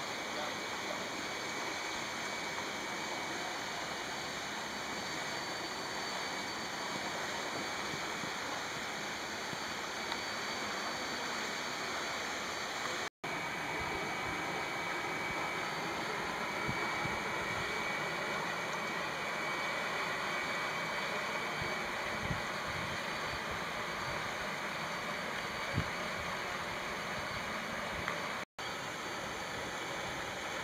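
Steady rush of water in a flooded street during heavy rain. The sound cuts out for an instant twice, about halfway through and near the end.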